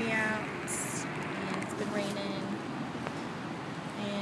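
Steady outdoor background noise of rain and road traffic, with a brief faint voice right at the start.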